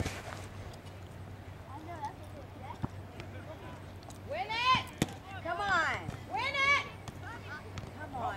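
Several high-pitched shouted calls from voices out on a soccer field during play, coming in the second half over a faint steady low hum.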